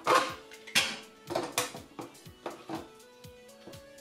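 A half apple pushed in a spring-loaded food holder over the blade of a Nicer Dicer Chef slicer: several short scraping, clacking strokes of plastic and fruit, the loudest in the first two seconds and fainter ones after. Background music with a steady beat plays underneath.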